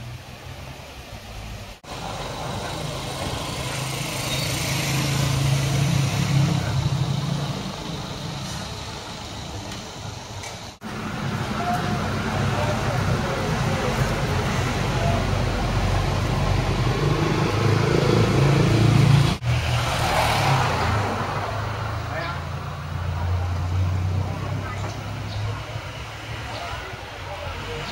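Street traffic, with motor vehicles passing and their engine noise swelling and fading over several seconds. The sound breaks off briefly three times.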